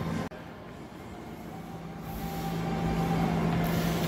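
A steady low mechanical hum with a faint higher tone over it and a rising background hiss, the room noise of a gym.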